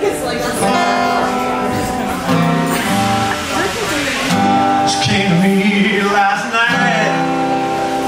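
Live acoustic band playing a song's instrumental intro: strummed acoustic guitar with a harmonica playing sustained notes that bend in pitch.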